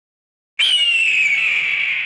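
A single bright ringing tone that starts suddenly about half a second in, slides slightly down in pitch and begins to fade.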